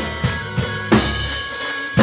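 A live drum kit played with sticks, snare and kick hits at an uneven groove, the hardest strokes about a second in and at the end. Under it run a sustained electric bass line and held keyboard chords.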